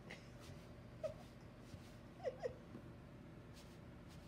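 Tabby cat making three short, high mews: one about a second in, then two in quick succession just past the middle, each dipping slightly in pitch.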